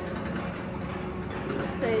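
Amusement park background noise around a roller coaster: a steady mixed hum with no distinct event. A short spoken word comes near the end.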